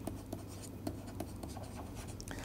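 Stylus writing on a tablet: faint, irregular short ticks and scratches of the pen tip as a short word is handwritten.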